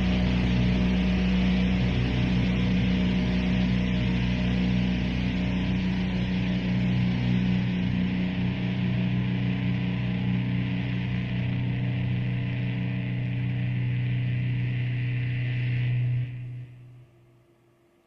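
Distorted electric guitars through amplifiers sustain a low, droning chord, with no rhythm: the close of a slow doom-metal song. The held notes shift partway through, then the sound cuts off about sixteen seconds in and dies away within a second or two.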